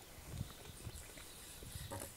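Knife slicing grilled beef steak on a wooden cutting board: a few faint soft knocks and small clicks as the blade meets the board.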